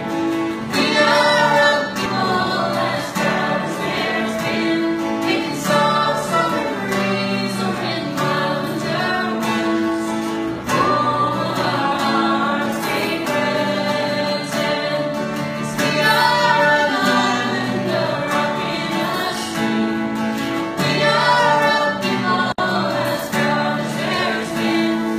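Live acoustic performance: a woman singing, with long held notes, over two strummed acoustic guitars.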